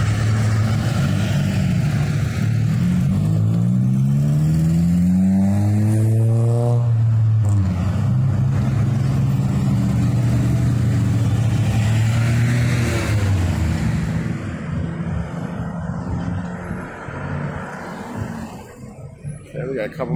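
Road traffic passing close by on a city street: a vehicle's engine accelerates, its pitch rising for a few seconds, then a steady engine drone carries on before the traffic noise falls away about fourteen seconds in.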